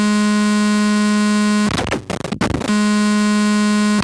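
Eurorack modular synth patch with a Mutable Instruments Sheep wavetable oscillator in a feedback loop through a Vert mixer with Switches expander. It holds a loud, steady low drone rich in overtones, which breaks about halfway into a second of harsh, noisy glitching, then settles back to the same drone before breaking up again at the very end.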